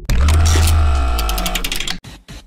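Logo intro music sting: a sudden hit with a deep bass boom and several ringing tones that fade over about two seconds, with a quick run of glitchy ticks around the middle, cutting off suddenly at the end.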